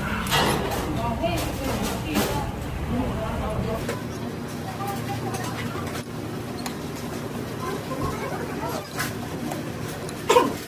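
Indistinct, muffled voices with scattered sharp clicks of chopsticks on dishes, over a steady low hum.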